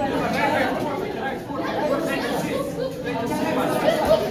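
Several voices talking and calling out over one another, a steady chatter of people in a large room.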